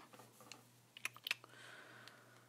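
A few faint clicks and light taps of a paintbrush against a plastic watercolor palette, followed by soft scrubbing as the brush picks up wet paint from one of the pans.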